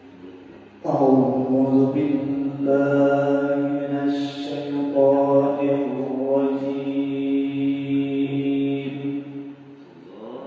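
A man reciting the Qur'an in melodic qiro'ah style into a microphone. It is one long, drawn-out phrase of held notes that begins about a second in and fades away near the end.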